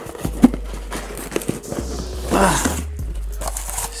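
Crinkling of bubble wrap and rustling and knocking of cardboard as bubble-wrapped cans are lifted out of a cardboard box, with a sharp knock about half a second in.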